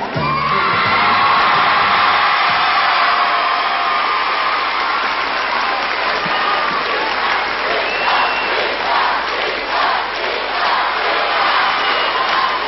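A studio audience applauding and cheering loudly as the song's music stops, with shrill whoops over the clapping.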